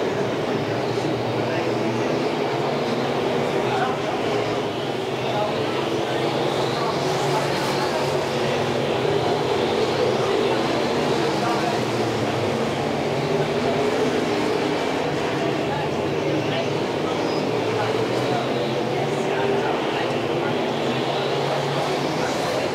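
A pack of dirt-track modified street race cars running hard around the oval, their engines in a loud, steady drone. The pitch rises and falls now and then as cars pass through the turns.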